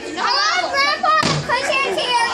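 Children's excited, high-pitched voices shouting, with a short thud about a second and a quarter in.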